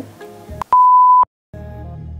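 A single loud, steady beep of one pure tone, about half a second long, like the beep of a film-leader countdown, followed by a brief silence and then instrumental music starting near the end.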